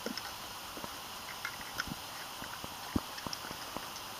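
Scattered small clicks and knocks of hands working the seat-pad clip loose on a Radio Flyer 4-in-1 trike, with one sharper knock about three seconds in, over a steady outdoor hiss.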